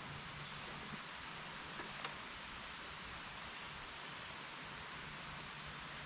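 Steady, even hiss of outdoor ambience, with a few faint light clicks about two seconds in and two brief, high bird chirps later on.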